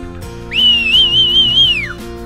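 A high whistle: one tone lasting about a second and a half that slides up, wavers in pitch, then falls away, loud over background guitar music.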